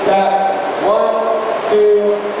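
A bachata song playing, its singer holding long notes and sliding between them.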